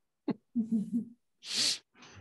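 A man's low chuckle, a few quick pulses of voiced laughter, followed by a breathy exhale.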